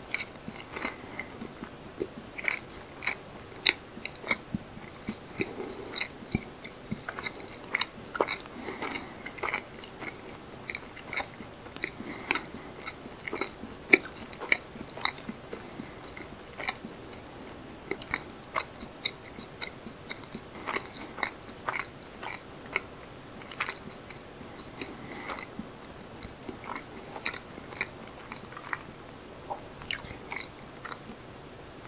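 Close-miked chewing of soft steamed fermented rice cake (jangijitteok). The mouth sounds come as a quick, irregular run of sharp clicks, several a second.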